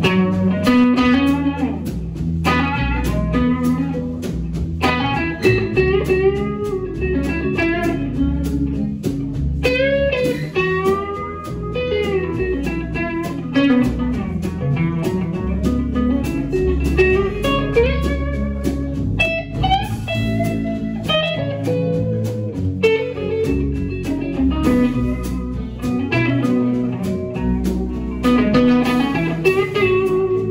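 Live band playing an instrumental blues passage: a guitar plays a lead melody with bending notes over bass and drums, recorded on a mobile phone from the audience.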